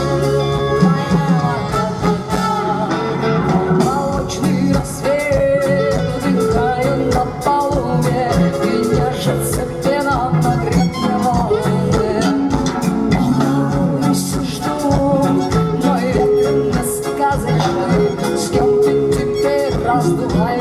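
Live band music: electric guitar, saxophone and trumpet over a drum beat, with a voice singing.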